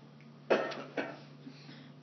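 A person coughing twice in quick succession, two sharp coughs about half a second apart.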